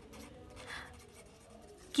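Faint scratching of handwriting on paper clipped to a clipboard, a little louder a little under a second in.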